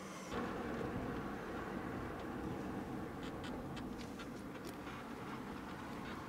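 Steady road and engine noise of a car driving, heard from inside the cabin, with a few faint clicks in the second half.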